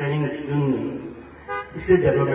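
A man speaking into a microphone. His speech pauses about a second in, and a very short, high-pitched toot sounds about one and a half seconds in before he goes on speaking.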